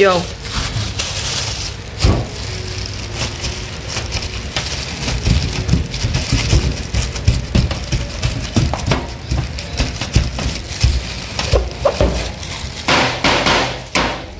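Thin plastic food-prep gloves crinkling and rustling while soft rice-flour dough is wrapped and pressed into a plastic mooncake mold, with scattered light clicks and knocks of the mold and hands against a metal tray. A steady low hum runs underneath.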